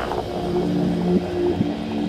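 Psybient electronic music: low sustained synth notes that step between pitches, with two quick downward pitch swoops about midway.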